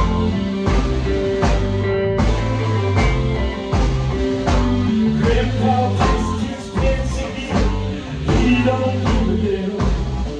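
Live psychedelic rock band playing, with electric guitar, bass and drums. The drums hit about twice a second over steady bass notes.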